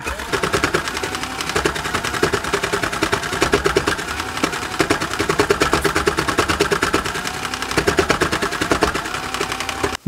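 Spin Master Cool Maker threadless toy sewing machine running, its needles punching rapidly through a thick fold of felt in a steady fast clatter over a faint motor whine. It stops abruptly at the very end.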